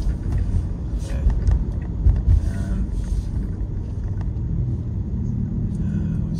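Road and tyre rumble inside the cabin of a Tesla electric car while it is driving. A low steady hum joins near the end.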